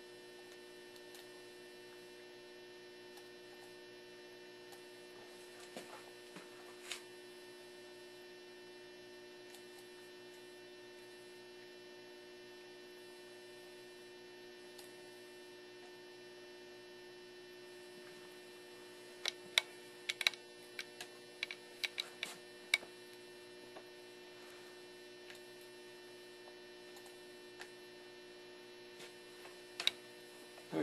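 Steady electrical hum, a low buzz with a clear fixed pitch that holds unchanged throughout. A few faint clicks come about a fifth of the way in, and a quick run of louder sharp clicks and knocks comes about two-thirds of the way through.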